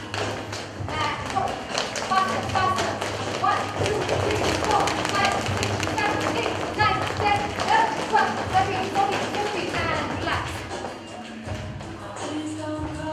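Dance music with vocals and a steady beat, with dancers' feet tapping and thudding on a tiled floor.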